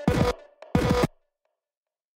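Electronic beat played back from an Ableton Live drum rack: short, pitched, bass-heavy sampled hits, two in the first second. Playback stops about a second in.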